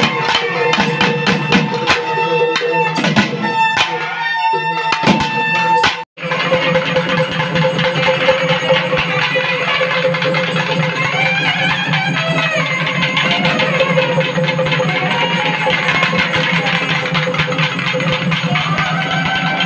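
Naiyandi melam folk band playing: fast, dense drumming under held notes from a reed pipe. About six seconds in, the sound cuts out for a moment. After that comes steadier music with one long held note, a wavering melody over it, and lighter drumming.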